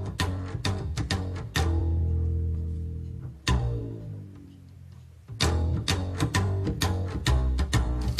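Double-bass music: sharp plucked notes in a quick rhythm, then a held bowed passage; the sound dies down about three and a half seconds in and the plucked rhythm comes back a couple of seconds later.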